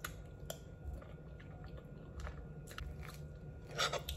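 A person quietly chewing a mouthful of soft tres leches sponge cake, with faint wet mouth clicks and smacks every half second or so.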